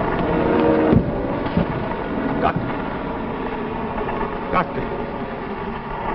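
A sustained droning chord of several steady tones, slowly thinning out, broken by a few sharp thumps and knocks about one, one and a half, two and a half and four and a half seconds in.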